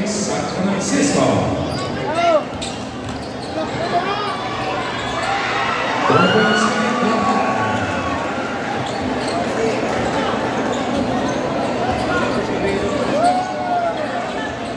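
Basketball game in a crowded indoor gym: a ball being dribbled on the hardwood court over steady crowd chatter and shouts, with a few short squeals typical of sneakers on the floor.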